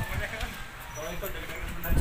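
Indistinct voices of people talking, in short phrases over a low background rumble.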